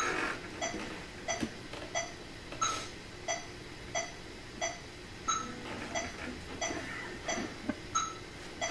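Metronome clicking steadily at about 90 beats a minute, with a higher-pitched accented click on every fourth beat marking the bar.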